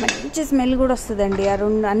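A woman speaking, with a couple of sharp clicks at the very start from the steel grinder jar being tapped over the bowl.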